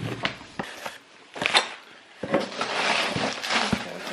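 Packaging being handled while unboxing: a few sharp knocks and taps, then plastic wrapping rustling and crinkling from a little over two seconds in.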